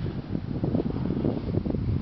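Wind buffeting a handheld camera's microphone: an uneven low rumble.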